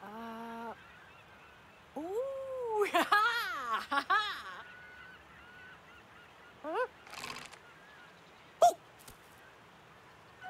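Wordless cartoon character vocalizations from an animated elephant and monkey: a short held call at the start, then a longer call about two seconds in that rises and falls and breaks into a quick wavering run. Short calls follow near seven seconds, and a quick upward squeak comes near nine seconds.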